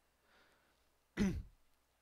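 A man briefly clears his throat once, about a second in, after a faint breath.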